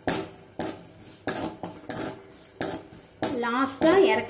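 Steel ladle stirring and scraping seeds around a dry metal kadai, with a sharp scrape or clink about twice a second as the spices are dry-roasted.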